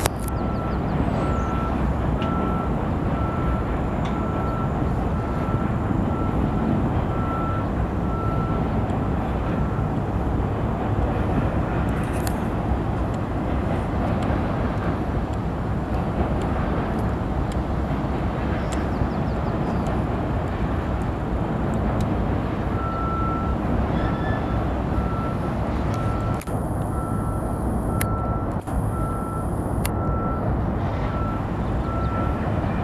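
Steady low rumble of a distant doublestack freight train rolling across a steel truss bridge. A reversing alarm beeps evenly through the first third, stops, then starts again near the end.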